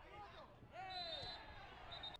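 A football player's loud, drawn-out cry as he is brought down in a tackle, over short blasts of a referee's whistle: one about a second in and another near the end. Players' shouts on the pitch come before it.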